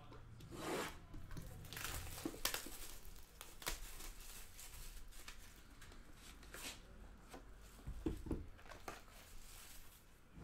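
Plastic shrink wrap being torn and crinkled off a sealed trading-card box, in a series of short rips and crackles with handling rubs in between.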